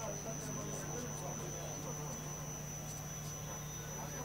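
A steady low electrical hum with a thin, high steady whine above it, under faint background talk.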